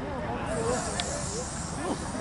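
Scattered, distant voices of players and onlookers on an outdoor football pitch, with a steady high hiss coming in about half a second in and a single faint click about a second in.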